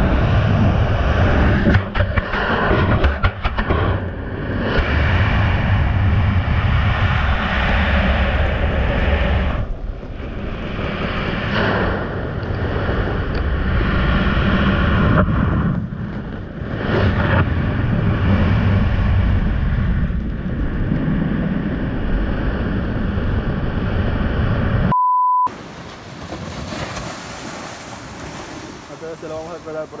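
Churning surf heard through a submerged action camera tumbling in the waves: a loud, muffled rushing of water that surges and dips. About 25 seconds in, a brief steady beep cuts it off, and quieter surf on the beach follows.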